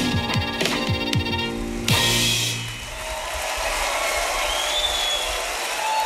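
Live western swing band with drums playing the closing bars, ending on a final accented hit about two seconds in that rings out briefly. An audience then applauds.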